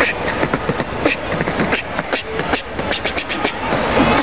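Human beatboxing: vocal percussion performed with the mouth, a quick, continuous rhythm of sharp clicks and hits.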